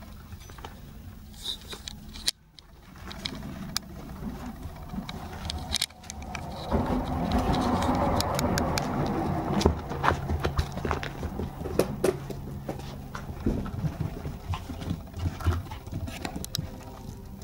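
Toy poodle puppy playing with a wire slicker brush: irregular light clicks and scrapes as it mouths and chews the brush's metal pins and wooden handle, with soft pattering of paws on carpet.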